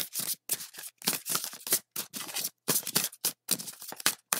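Tarot deck shuffled by hand: a quick, irregular run of crisp card snaps and slides, several a second, with short gaps between them.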